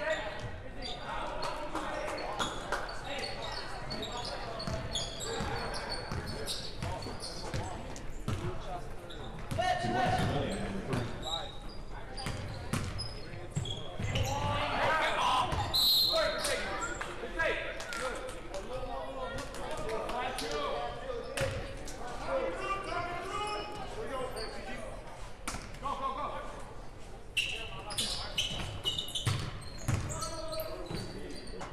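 A basketball bouncing on a hardwood gym floor during play, with players' and spectators' voices calling out over it, echoing in a large hall.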